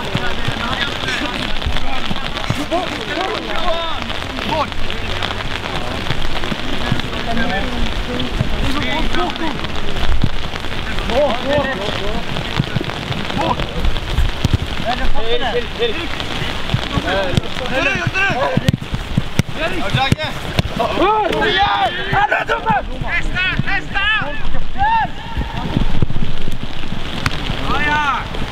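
Rain falling on an umbrella close to the microphone, a dense continuous patter of drops. Voices call out across the pitch, more of them in the second half.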